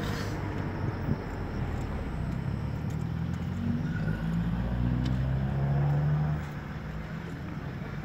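Car engine and tyre noise heard from inside a moving car, a steady low hum that grows a little louder and then drops away about six and a half seconds in.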